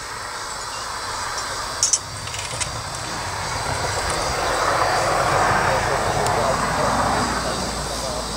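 A passing aircraft: a steady rushing engine noise that swells to its loudest about five seconds in and then starts to fade. A couple of small clicks come about two seconds in.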